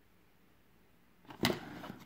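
Near silence, then about one and a half seconds in a sharp click, followed by faint handling noise, as a small scalpel knife in its sheath is handled in a cardboard presentation box.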